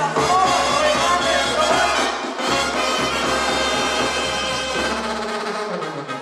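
Live Tierra Caliente band music for dancing, with brass over a deep bass line. The bass line fades out shortly before the end.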